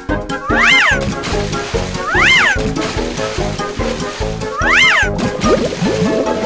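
Cartoon background music with three high, squeal-like sound effects, each rising and falling in pitch, about a second and a half to two and a half seconds apart. Near the end comes a run of quick little upward glides as the scene turns to rising underwater bubbles.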